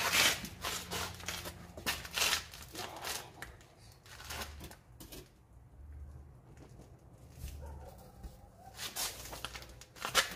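Handling noise as a replacement window glass is set into its urethane-lined frame and pressed home by hand: scuffs, rustles and light knocks of hands, glass and clothing. The sounds come in short flurries in the first three seconds and again about nine seconds in, with faint low thumps in between.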